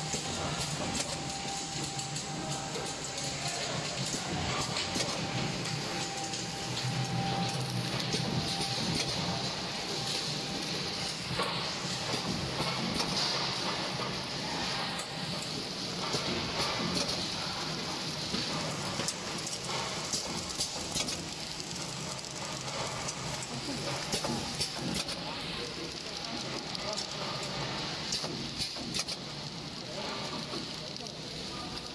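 Horizontal flow-wrapping machine running steadily as it wraps trays of sliced bread in film, a continuous mechanical clatter full of quick clicks.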